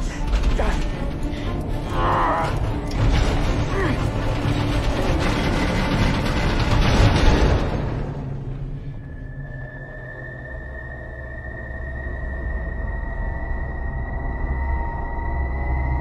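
Film soundtrack: loud rumbling and rattling effects of a shuttle in distress, with a voice straining through them. About eight seconds in it falls away to tense score, a high held tone slowly rising in pitch over a low drone.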